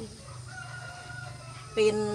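A rooster crowing faintly, one drawn-out call lasting about a second and falling slightly in pitch. A woman's singing voice comes back in near the end.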